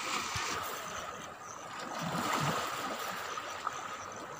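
Sea water washing and lapping among shoreline rocks, a steady rushing wash that dips and swells again.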